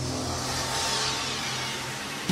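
Logo-intro sound effect: a steady, noisy whoosh over a low hum, slowly fading after a sharp hit just before it.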